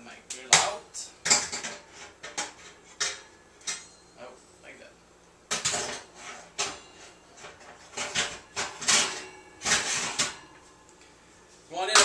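Kitchenware clattering and knocking as things are moved around inside a kitchen cabinet: a run of sharp knocks and rattles in clusters, with short quiet pauses between.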